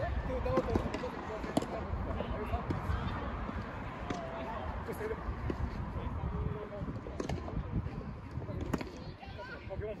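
Soft tennis rally: several sharp pops of rackets striking the soft rubber ball, a second or more apart, under the voices of players talking and calling across the courts.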